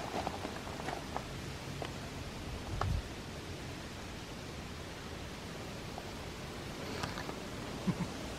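Soft steady hiss of breath blown onto a smouldering tinder bundle of dry grass and leaves to coax the ember into flame, with faint rustling and a soft thump a little under three seconds in.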